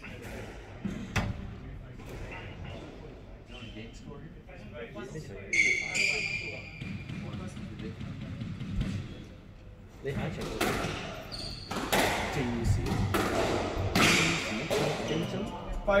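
Squash ball being struck by rackets and hitting the court walls and floor in a rally, sharp echoing cracks that come thick and fast in the second half.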